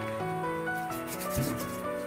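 Background music with a melody of stepping notes, over light rubbing as fingers work soft clay against a plastic mat.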